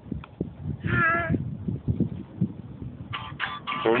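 A small child's short, high-pitched squeal lasting about half a second, wavering in pitch, about a second in.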